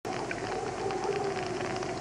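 Film soundtrack: a drawn-out moaning tone, sinking slightly in pitch, over a steady hiss.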